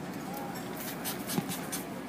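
A few short scratchy rubbing strokes with a small click in the middle, over a low murmur of people talking.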